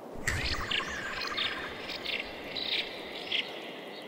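Woodland ambience cutting in a moment in: birds chirping in short, repeated calls over a steady background hiss.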